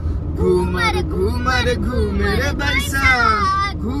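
A young girl's high-pitched, sing-song voice over the steady low rumble of a moving car, heard from inside the cabin.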